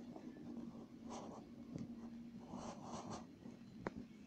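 Faint scratching strokes on a tablet touchscreen as letters are drawn, in a few short bursts, with a sharp tap near the end over a low steady hum.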